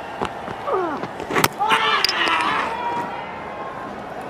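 Cricketers' voices shouting out on the field, two high calls about a second apart, the second held for about a second, with a few sharp clicks before them.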